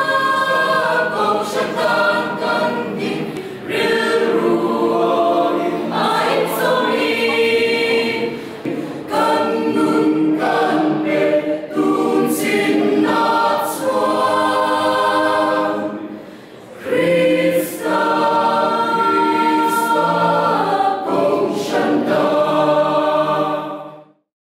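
A mixed choir of men and women singing unaccompanied in several parts, in long held phrases with a short breath break a little past the middle. The singing cuts off suddenly at the end.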